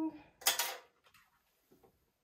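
A short clatter of hair tools being handled, as a comb is set down and a corded curling wand is picked up, about half a second in, after the last spoken words.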